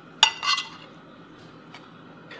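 A metal fork clinking against a plate as fried eggs are lifted off it: one sharp clink about a quarter of a second in, then a second, ringing clink right after.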